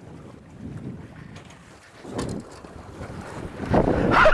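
Wind buffeting the microphone over sea water washing against a boat, with two brief louder surges about two seconds in and near the end.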